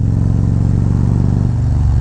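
Harley-Davidson Road Glide Special V-twin with a Khrome Werks dual exhaust and a stage 2 cam build, running steadily at riding speed. It is heard from the rider's seat, and the engine note eases slightly a little after halfway.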